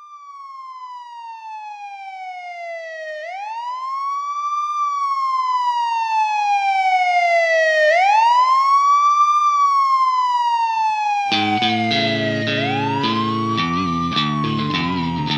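A siren-like wail opens a song. It fades in from quiet and repeatedly slides slowly down in pitch, then sweeps quickly back up, about three times. A heavy rock band with drums comes in near the end while the wail carries on over it.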